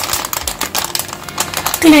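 Clam shells clicking and clattering against one another in quick, irregular succession as a hand stirs and rubs them in a bowl while washing them.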